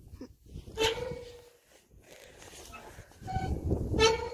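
A playground swing creaking as it swings, a short squeak about a second in and the same squeak again near the end, about three seconds apart with each pass. Low rumble of air and movement on the phone microphone swells with the motion.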